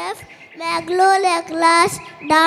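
Young children singing into stage microphones in held, steady notes, with a short break soon after the start.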